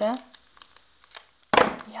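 Foil trading-card packets, taped together tightly, being handled and pulled at: faint crinkles and small clicks, then a sudden loud rustle about one and a half seconds in.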